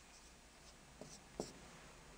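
Near silence with two faint taps of a dry-erase marker on a whiteboard, about a second in and again just under half a second later.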